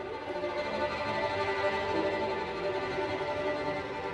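Live contemporary chamber music for two violins, viola, double bass, piano and clarinet. The bowed strings, violins to the fore, hold several sustained notes together, swelling in loudness midway and easing back.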